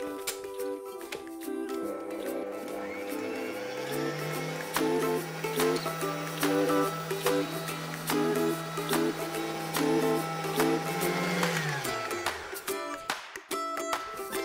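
Smeg stand mixer's motor and wire whisk beating egg yolks: the motor spins up about four seconds in, runs steadily, then winds down near the end. Background ukulele music plays throughout and is the louder sound.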